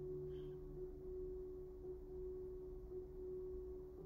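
Faint background music of steady, held pure tones: one tone sounds the whole time, and a lower tone underneath drops out about a second in.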